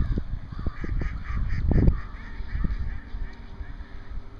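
A flock of waterfowl calling, a quick run of short repeated calls in the first half that thins out later. Under them, low rumbling buffets of wind on the microphone, loudest just before two seconds in.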